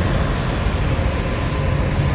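Steady drone of running machinery with a low hum and faint steady tones: the background noise of a ship's engine room.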